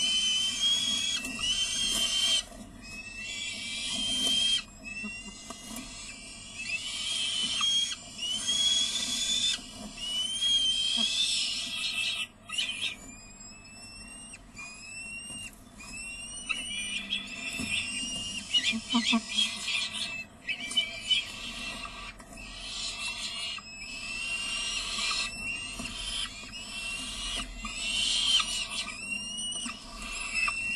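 Peregrine falcon nestlings begging for food with repeated high-pitched calls, some long and harsh, with a run of short rising calls about halfway through.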